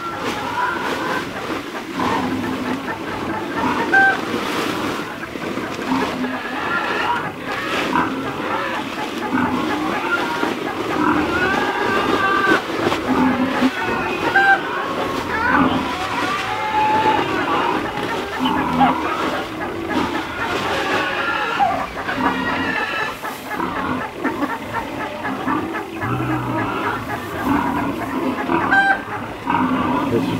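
A flock of laying hens clucking and calling, with many short overlapping calls throughout.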